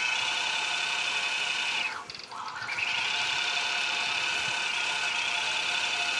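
Computer-guided longarm quilting machine stitching a pattern through a quilt: a steady running whine. It drops away briefly about two seconds in, then picks up again.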